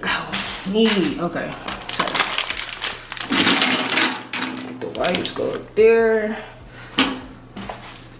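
Crackling and rustling of toilet paper rolls and their wrapping being handled, with sharp clicks, loudest in the first half. A voice sounds a few short wordless notes, at about a second in and again around six seconds.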